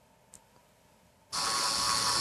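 Near silence with one faint click, then a steady hiss with a faint high whine cuts in abruptly about a second and a quarter in.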